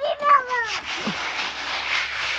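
An aerosol spray can hissing steadily, starting a little under a second in. A brief high-pitched call comes just before it.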